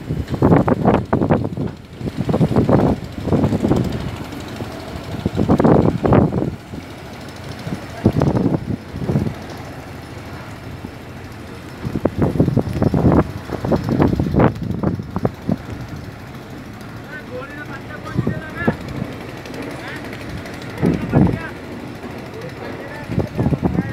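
Voices talking on and off over a steady low rumble from a wooden fishing boat's engine as the boat moves off through the water.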